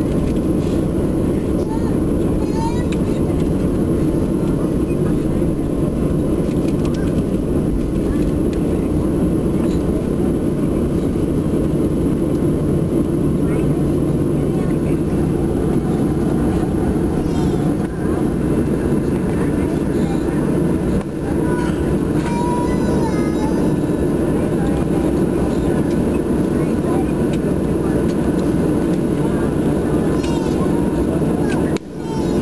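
Steady, loud rumble of a jet airliner heard from inside the cabin as it taxis on the ground, with faint passenger voices in the background.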